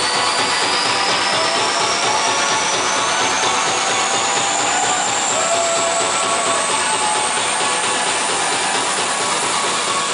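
A live band's loud build-up: a wash of electronic noise with a thin tone sweeping slowly upward all the way through, over fast, dense drumming.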